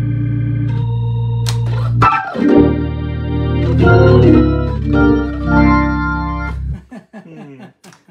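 Hammond B3 organ playing held chords over a deep bass; the chord changes about two seconds in, then several more chords follow before the sound cuts off about a second before the end.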